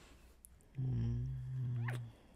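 A man's low, steady hum, a sleepy 'mm', starting about a second in and lasting a little over a second.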